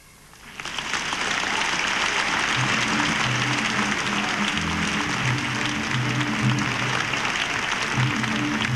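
A concert audience applauding at the end of a song. The applause swells in about half a second in and holds steady. From about two and a half seconds in, the band plays low held notes under it.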